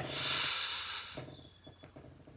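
A man's long, hissing breath forced out through the mouth, lasting about a second and then tailing off.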